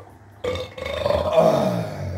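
A man retching hard, one long heave that starts about half a second in and drops in pitch toward the end.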